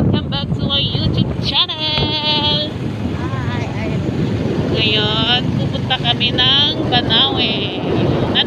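Wind rushing and buffeting over the phone microphone during a motorbike ride, with a vehicle's running noise underneath. A woman's voice speaks over it twice.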